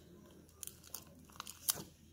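Faint crinkling and a few small clicks from a paper luggage tag wrapped in clear packing tape as it is handled and pressed on. The sharpest click comes near the end.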